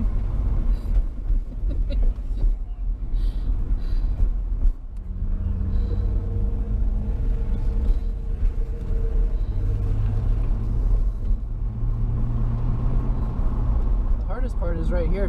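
Chevrolet Corvette's V8 engine running at low revs, heard from inside the cabin as the car moves slowly, a steady low rumble. About five seconds in the sound briefly drops, then settles into a steadier low drone.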